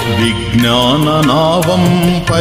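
Devotional Telugu bhajan: a voice sings a gliding, ornamented melodic line, entering about a quarter second in, over sustained instrumental accompaniment and an evenly spaced percussion beat.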